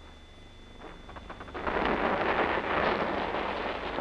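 Dense battle noise on an old film soundtrack: a crackling, rumbling burst of firing that swells about a second and a half in and lasts about two seconds, over a faint low hum.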